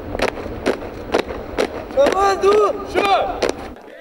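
A squad of cadets marching in step, their boots striking the paving in unison about twice a second. About halfway through, the marchers chant a marching song together in chorus for a second or so.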